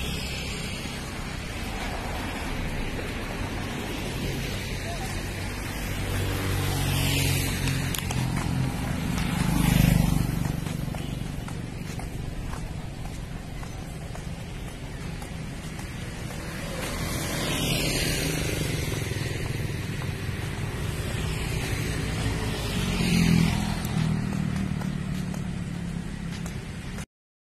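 Road traffic: motor vehicles passing one after another with engine and tyre noise over a steady rumble. The loudest pass is about ten seconds in and another comes near the end.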